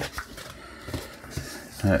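Folding knife slitting the tape along a cardboard box, then the box being handled and turned over: faint scraping with a few small knocks.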